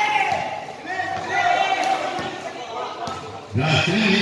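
A basketball bouncing on a concrete court, with short knocks, under people's voices calling out. The loudest call comes near the end.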